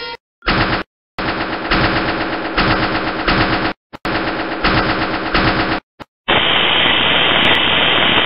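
Sound-effect bursts of rapid machine-gun fire: a short burst, then two longer bursts of a couple of seconds each, each cut off abruptly by a brief silence. From about six seconds in, a steady hiss of noise takes over.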